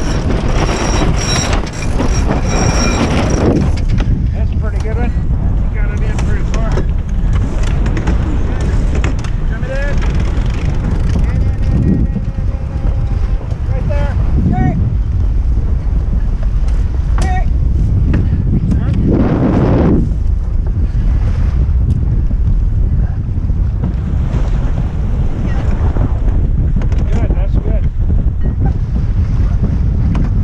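Strong wind buffeting the microphone over water rushing past the hull of an Olson 29 sailboat under sail, a loud steady rumble. It swells near the start and again about twenty seconds in.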